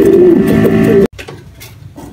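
Domestic pigeons cooing, a low wavering call that cuts off abruptly about a second in.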